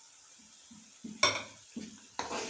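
Slotted metal spoon striking and scraping a metal karahi as spiced onion masala is stirred in oil, over a faint sizzle of frying. The pan is quiet for about the first second, then comes one sharp clang-like strike, followed by a second smaller one.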